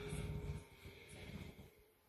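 A woman breathing through a labour contraction, the breaths coming in uneven waves, strongest at the start.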